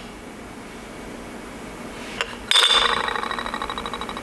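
Quiet room tone. About two and a half seconds in, a metal fishing spoon is set down on the glass top of a digital kitchen scale, rattling rapidly with a high ring as it rocks and settles.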